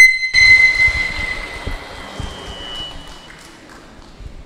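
A sharp high ringing tone at the start, then an audience applauding, the clapping fading away over about three seconds.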